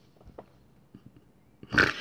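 A woman's breathy laughter: a near-silent pause with faint breaths and small clicks, then a loud breathy burst of laughter near the end.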